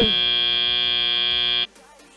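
FRC field end-of-match buzzer sounding the end of the match: a loud, steady buzz that cuts off suddenly about a second and a half in.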